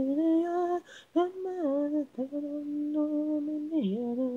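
Unaccompanied male lead vocal, an isolated vocal track with no instruments, singing a slow Japanese ballad phrase: a held note, a short break, a brief line, then a long sustained note that dips in pitch near the end.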